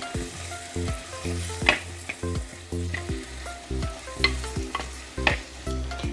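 Onion, tomato and ground masala sizzling as they fry in a clay pot, stirred with a steel spoon that scrapes and knocks against the pot's rim several times. Soft background music with a bass line runs underneath.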